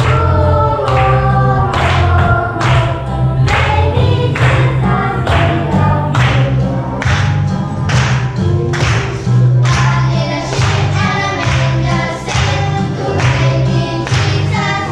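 A group of children singing together over a recorded backing track with strong bass and a steady beat, about two beats a second.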